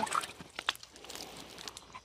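Faint gritty crunching of sand, with a few sharp clicks, the sharpest a little before the middle.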